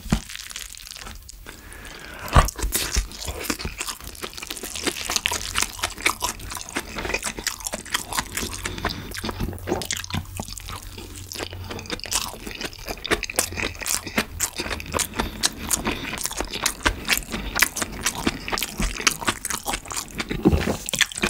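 Close-miked chewing of a big mouthful of yeolmu bibimbap, with its young radish kimchi, cabbage and bean sprouts giving dense, rapid wet crunching and mouth clicks. It is quieter for the first two seconds, and a single sharp click about two seconds in is the loudest moment.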